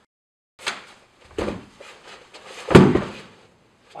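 Sudden impacts of a martial-arts demonstration: sharp slaps of strikes and blocks about half a second and a second and a half in, then the loudest, deepest thud about three seconds in as the partner is taken down onto the padded mat.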